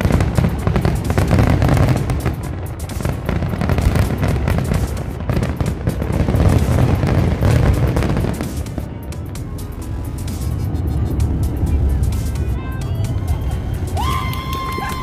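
Aerial fireworks exploding, a dense run of booms and crackles over a continuous rumble, heaviest in the first eight seconds and then easing off.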